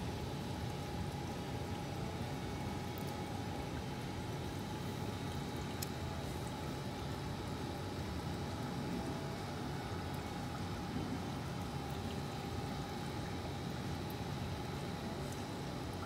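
Aquarium water circulating in a running tank system: a steady rush of moving water with a faint even hum from the pumps.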